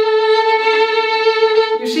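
Violin bowed high up on its Thomastik Dominant G string, one long held note. It is the position where this string struggles to give a full sound. The note breaks off near the end as speech begins.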